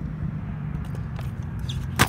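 A stunt scooter rolling on skatepark concrete over a steady low rumble, with a few light clicks and one sharp clack at the very end as the scooter comes in close.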